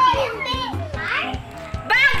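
Children's excited, high-pitched voices over background music with a steady beat.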